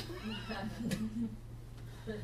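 A person laughing: a few short pitched bursts in the first second and a half, then it dies away, over a steady low hum.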